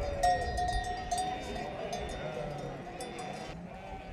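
Bells on a walking flock of sheep and goats clanking and ringing in an irregular jangle, with a sheep bleating early on over background crowd chatter.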